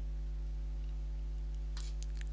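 Steady low electrical hum, with evenly spaced overtones, on the voice-over recording: mains hum in the microphone chain. A brief faint hiss near the end.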